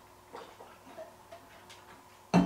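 A few faint, short clicks and soft drinking sounds as a man sips through a straw from a stainless steel tumbler.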